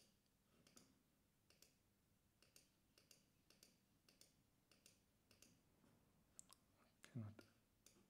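Faint, irregular clicking of a computer pointing device, about one to two clicks a second, with a brief louder low sound about seven seconds in.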